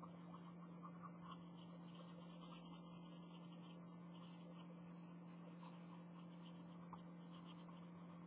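Faint pencil lead scratching across sketchbook paper in quick, uneven strokes, over a steady low hum.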